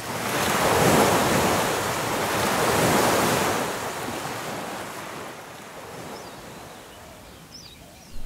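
Ocean surf washing onto a sandy beach, swelling over the first few seconds and then slowly fading away.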